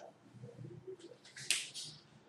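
Faint squeaks of a marker pen on a whiteboard, then a sharp plastic click about one and a half seconds in as the marker is handled and capped.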